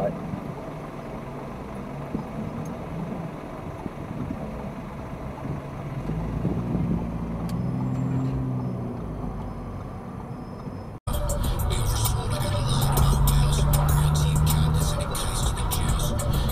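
Inside a car's cabin: a low, steady engine hum from the car standing still in traffic, with traffic passing. About eleven seconds in, it cuts abruptly to the louder road and wind noise of a car driving at around 60 km/h.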